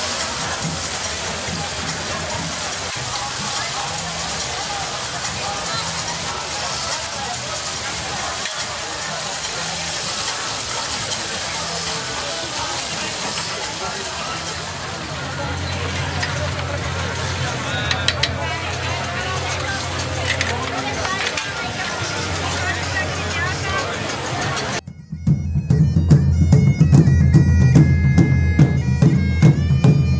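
Busy outdoor crowd noise with faint bagpipe music underneath. About 25 seconds in, it gives way abruptly to loud, clear bagpipe playing: steady low drones under a stepping chanter melody.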